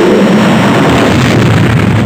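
Science-fiction spaceship engine sound effect: a loud, steady rushing roar with a deep rumble underneath.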